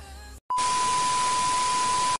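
Background music cuts off; after a brief gap, a steady high beep over loud static hiss sounds for about a second and a half and cuts off suddenly, a transition sound effect.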